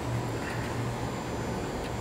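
Low, steady hum of a running Parker-Majestic internal grinder, with a slight regular pulsing in it.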